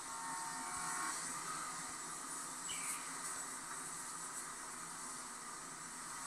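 Faint steady hiss of background noise from a television's speaker, picked up through the room.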